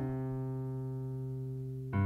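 Electric keyboard holding a sustained chord in a piano voice between sung lines, changing to a new, louder chord just before the end.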